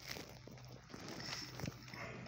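A dog's claws clicking on a hard kennel floor as it walks: a few scattered clicks and taps, the strongest near the end, over a low steady room hum.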